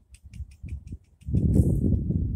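A horse blowing out through its nostrils: a fluttering snort about a second long that starts just past the middle. A few faint clicks come before it.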